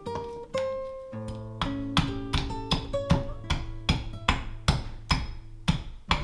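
Acoustic guitar music, strummed and plucked with a steady rhythm of sharp strokes.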